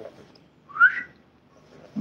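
A single short whistle rising in pitch, about a second in, over faint rustling of large book pages being flipped.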